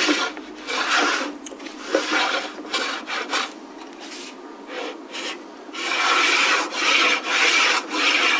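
Shoulder plane cutting along the bottom edge of a curved wooden panel, trimming it down to a marked reference line: a series of rasping strokes, with a short pause in the middle.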